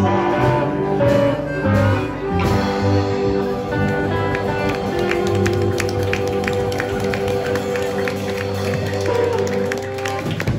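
Live band music: hollow-body electric guitar, upright bass and drums, with long held notes from a harmonica played into a cupped microphone, the song drawing to its close near the end.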